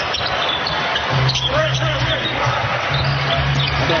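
A basketball being dribbled on a hardwood court, over a steady arena background of music with a low sustained tone.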